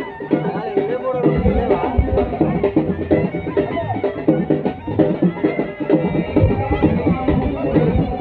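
Live Dhimsa folk dance music: drums beating a quick, steady rhythm with a reed pipe playing a wavering melody over them.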